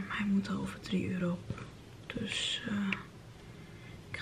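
A woman talking in a low, hushed voice, close to a whisper.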